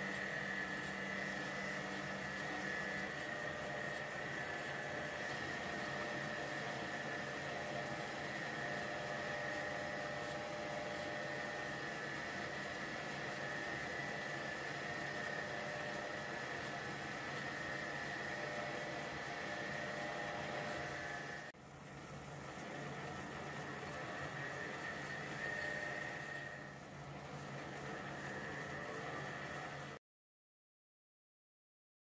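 Metal lathe running steadily with a high whine, its tool taking a light cut of about 0.1 mm to turn a recess into the shoulder of a locomotive axle. The sound drops out suddenly and briefly about two-thirds through, then carries on.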